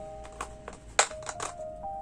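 Several sharp clicks and crackles of a clear plastic packaging tray as small silicone pieces are pulled out of it, the loudest about a second in, over soft background music with held notes.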